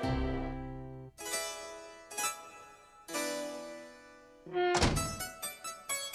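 Cartoon score: sustained keyboard chords struck one after another, each dying away, then a loud sudden thump about three-quarters of the way through, followed by a quick run of short plucked notes.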